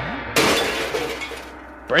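A sudden crash of something breaking with a glassy shatter about a third of a second in, fading away over about a second. A man's laugh starts near the end.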